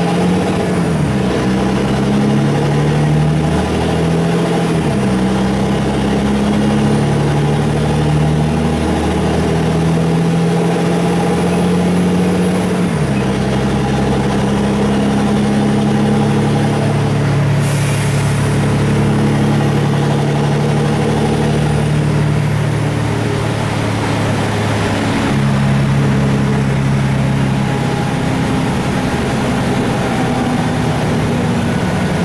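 Interior sound of a LiAZ-6213.20 articulated city bus under way: its diesel engine and drivetrain run steadily, the pitch stepping down or up several times as the bus changes speed, with a faint high whine above. A single sharp knock or rattle comes a little past halfway.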